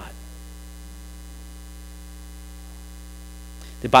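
Steady low electrical hum in the audio feed, with no other sound until a man's voice starts right at the end.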